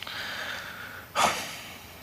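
A man's shaky, drawn-out breath, then a sharp gasp about a second in, as he chokes up and fights back tears.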